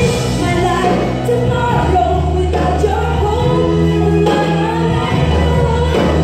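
A woman singing into a microphone over live band accompaniment, with electric bass holding long low notes beneath the melody, amplified through a hall PA.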